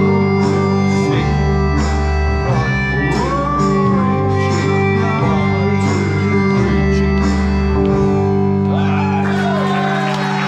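Live band music led by electric guitar, with held bass notes and chords over a steady beat. Near the end, voices come in over the music.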